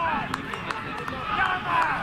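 Football players shouting and calling to each other across an open grass pitch during play, with a few short, sharp knocks.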